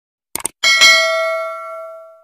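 A quick double mouse-click sound effect, then a notification-bell ding that rings out and fades slowly: the stock sound effect of a subscribe button's bell icon being clicked.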